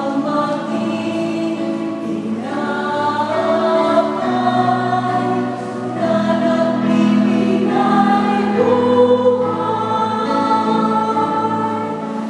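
Mixed church choir singing a Tagalog hymn in long held notes.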